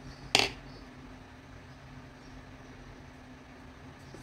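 A single sharp snip about a third of a second in: scissors cutting the crochet thread after the piece is finished. A faint steady low hum runs underneath.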